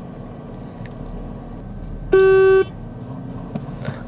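Steady low hum of a car cabin with the engine running, broken about two seconds in by a single loud electronic beep at one steady pitch, lasting about half a second, from the driving-test scoring unit on the dashboard.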